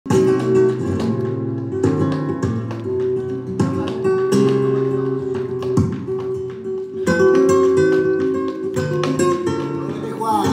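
Flamenco guitar playing bulerías, with sharp percussive strokes in the rhythm, accompanied by hand clapping (palmas).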